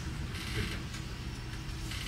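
Room tone: a steady low hum with faint rustling and a soft click near the end.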